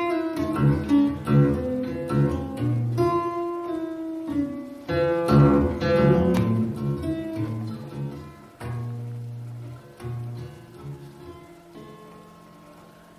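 Solo acoustic guitar played live, fast picked notes and hard strums at first, then slower single notes left ringing and dying away toward the end.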